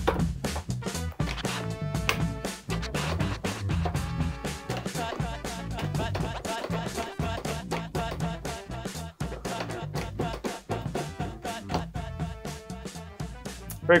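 Beat-driven DJ music played back from a Rane Performer controller running Serato DJ Pro, with a steady beat and heavy bass running on.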